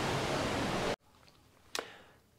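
Steady rushing outdoor noise, such as river water or wind on the microphone, that cuts off suddenly about halfway through, leaving near silence broken by a single faint click near the end.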